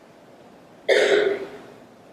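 A person coughs once, a short cough clearing the throat, about a second in; it dies away within half a second.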